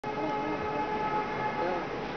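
Diesel locomotive horn held as one long steady note that fades out near the end, with people's voices underneath.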